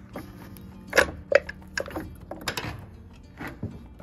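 A handful of short sharp knocks and clanks, the two loudest about a second in, from a tin soup can hanging on a string being pulled and knocking against the wall framing.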